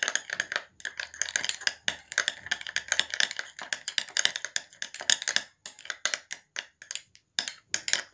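A metal spoon stirring a thick paste in a small cut-glass bowl: rapid, irregular clicks and taps of the spoon against the glass as Vaseline, aloe vera gel and vitamin E oil are mixed.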